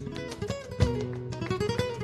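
Flamenco guitar played live: a fast run of plucked single notes with sharp attacks, the melody climbing in the second half.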